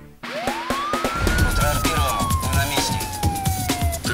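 Closing theme music for a TV programme, with a beat. Over it, a single siren wail rises in pitch for about a second and then falls slowly.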